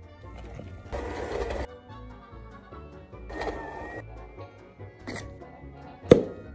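Electric hand mixer whirring briefly as its beaters whisk butter in a glass bowl, about a second in, over background music; a second short burst of similar noise comes near the middle.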